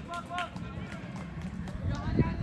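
Football players' distant shouts across the pitch: a few short calls in the first half second, then fainter voices over a steady low outdoor background noise.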